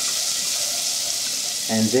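Garlic, a dried red chilli and oregano frying in olive oil: a steady, high sizzling hiss.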